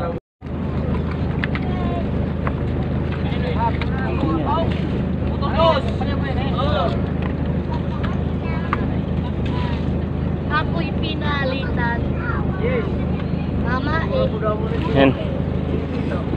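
A boat engine idling with a steady low hum while many voices chatter over it. The sound cuts out completely for a moment just after the start.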